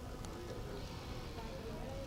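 Faint murmured voices of a small group standing by, over a low steady outdoor rumble.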